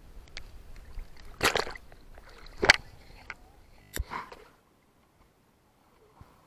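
Water splashing in a swimming pool as a person jumps in, with two loud splashes about a second and a half and nearly three seconds in and a sharp knock near four seconds, then the sound drops to near silence.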